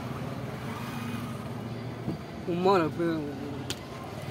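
Low steady hum of a motor vehicle running, with a man's voice breaking in briefly a little past halfway.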